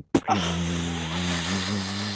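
Radio-play foley effect of the rocket ship's switch being thrown: a sharp click, then a steady low mechanical drone like an engine running, produced live at the microphone by the foley artist.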